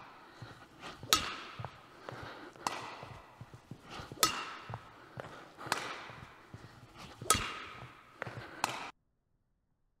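Badminton racket striking a shuttlecock on overhead shots, five crisp hits about a second and a half apart, echoing in a large sports hall, with fainter knocks in between. The sound cuts off abruptly about nine seconds in.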